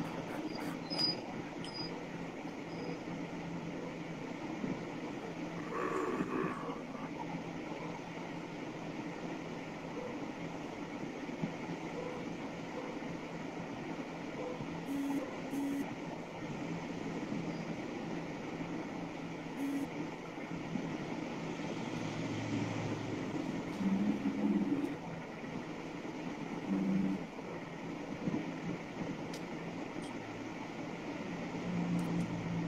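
Steady background room noise: an even hiss with a low hum, broken by a few faint short sounds about six seconds in and again a little past the twenty-second mark.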